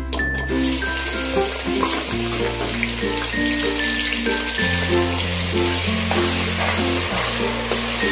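Background music with a melody over a bass line, and under it a steady sizzle of food frying in hot oil that starts about half a second in.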